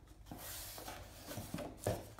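Cardboard shipping box being handled and turned over, its surfaces scraping and rustling against the hands, with a few light knocks, the sharpest near the end.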